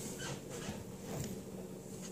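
Faint handling noises of computer parts: a few light clicks and rustles as a CPU cooler bracket is handled over the motherboard.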